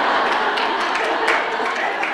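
A room full of women laughing and chattering all at once, with a few scattered claps, the sound fading near the end.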